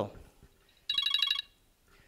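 A short electronic ringing tone, a fast-warbling chord of several high pitches, about a second in and lasting about half a second.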